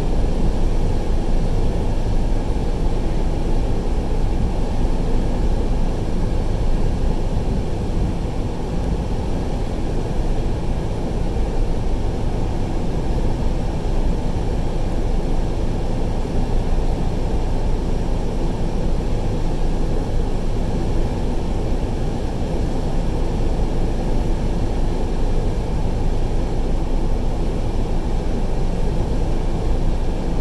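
Steady low rumble of a vehicle driving at highway speed, heard from inside the cab: engine and tyre noise that holds even throughout.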